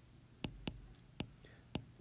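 A stylus tapping on an iPad's glass screen while handwriting, four short, faint clicks at uneven intervals.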